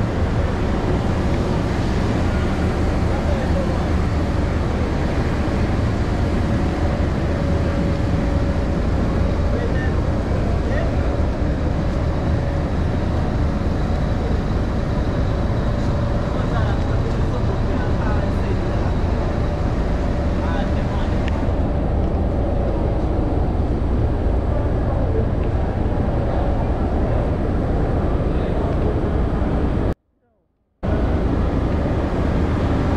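Busy warehouse and yard ambience: a steady low rumble with indistinct voices of people nearby.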